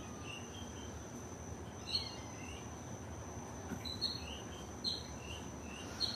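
Crickets trilling steadily in one high, even note, with short high chirps breaking in now and then, the loudest about two seconds in and again around four to five seconds.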